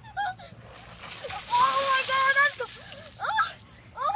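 A tub of ice water dumped over a person, landing in a splashing rush about a second and a half in that lasts about a second. A held high cry from the soaked person runs over the splash, and a short rising yelp follows.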